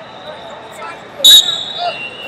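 A short, loud, shrill whistle blast about a second in, over the chatter of voices in a large hall.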